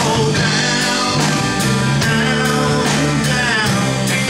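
Rock band playing live: electric and acoustic guitars, bass guitar and drums, with a steady drum beat of a little over two strikes a second.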